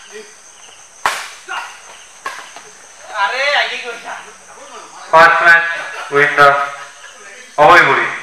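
Badminton rackets striking a shuttlecock in a fast doubles rally: sharp smacks about a second in, then at one and a half and two seconds, again around five seconds and near the end. Loud shouts from the players ring out over the later hits and are the loudest sound.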